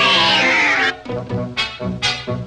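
Cartoon alley cats yowl together in one long, falling meow over orchestral music. The yowl breaks off about a second in, and short, clipped notes from the orchestra follow.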